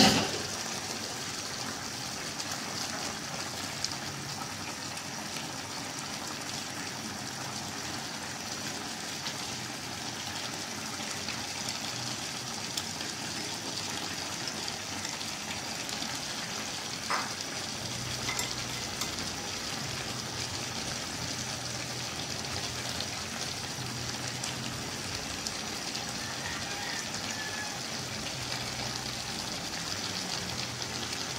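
Pork hock adobo simmering in an aluminium wok on a gas stove: a steady sizzling hiss. There is a short knock right at the start and a faint tap about 17 seconds in.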